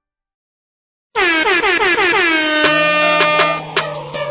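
Silence, then about a second in a loud air-horn sound effect blares, its pitch sagging at first and then holding. About halfway through, a hip hop beat with a deep bass note comes in beneath the horn.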